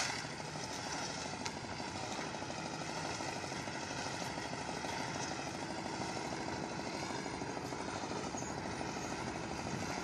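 A steady mechanical drone carrying several faint, slightly wavering high tones, unbroken throughout.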